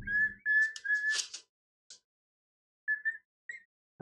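A person whistling short notes at one steady pitch: three in a row at the start, then two brief ones about three seconds in. A few sharp handling clicks come about a second in.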